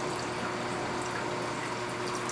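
Steady trickle and splash of water circulating in a 300-gallon reef aquarium, with a thin steady hum underneath.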